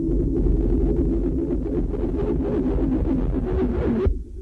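Lo-fi experimental noise recording: a dense low rumble with wavering, droning tones, and a crackling, buzzing layer above it that grows stronger over the last couple of seconds. It cuts off abruptly at the very end.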